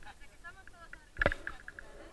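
Faint voices of people nearby, with a single thump on the camera about a second in.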